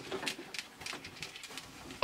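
Quiet room tone with a few faint, soft clicks scattered through it.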